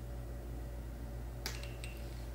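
A steady low hum, with two short light clicks about one and a half seconds in, the first with a faint ring, from sipping an iced drink through a metal straw in a glass jar.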